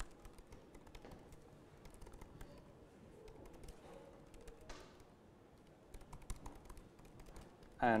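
Quiet typing on a laptop keyboard: irregular key clicks, coming faster near the end.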